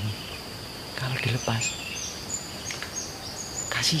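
A steady high-pitched insect drone runs throughout, with a series of short, very high chirps repeating from about halfway on. A man's voice murmurs briefly about a second in, and speech begins again right at the end.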